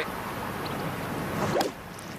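Golf club striking a ball off the tee: a single sharp crack about one and a half seconds in, after a quiet stretch.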